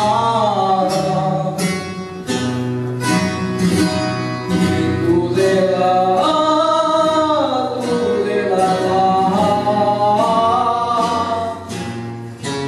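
A man singing a traditional Spanish song in long, held, ornamented notes, accompanied by a strummed Spanish guitar and bandurria.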